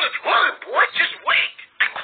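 Pingu's squawky, duck-like gibberish voice: about four short rising squawks in quick succession.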